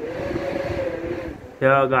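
Heavy storm rain with hail falling on a balcony ledge, a steady rushing noise with low buffeting underneath.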